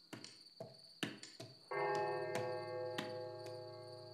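Steady high chirring of crickets, with a few light knocks in the first second or so. Just under two seconds in, a sustained music chord comes in and slowly fades.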